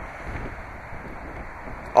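Wind on the microphone: a steady rushing noise with a low rumble near the start.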